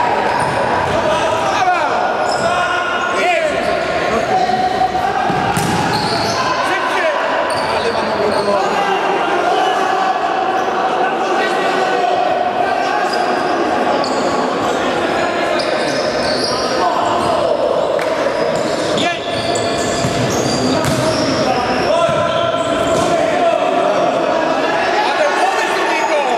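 Futsal being played on an indoor court: the ball being kicked and bouncing on the floor amid players' shouts, all echoing in a large sports hall.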